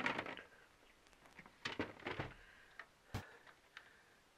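Scattered light clicks and knocks of handling as a battery is set back into its plastic battery box, with one sharper knock about three seconds in.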